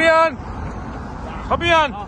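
Two short, loud calls from a person's voice, each with a rise and fall in pitch, about a second and a half apart, over a steady hum of road traffic.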